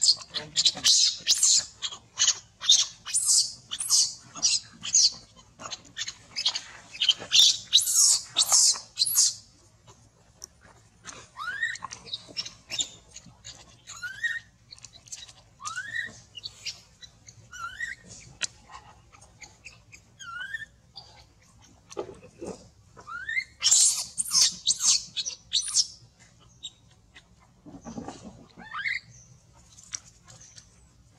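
Infant macaque screaming: a long run of rapid, high-pitched shrieks, then softer short rising squeaks every second or two, then another short bout of shrieks about two-thirds of the way in. These are the distress cries of a baby left on the ground and not picked up.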